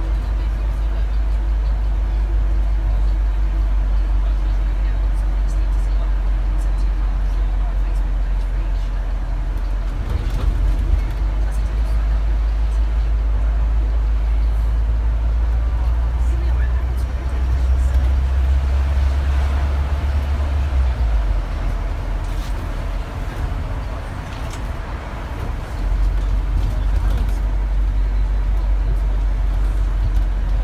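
London double-decker bus heard from inside its upper deck: a steady low engine and road rumble that dips for a few seconds about two-thirds of the way through, then picks up again, with city traffic around it.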